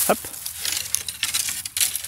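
Dry, dead willow saplings being broken by hand, with brittle snapping and crackling.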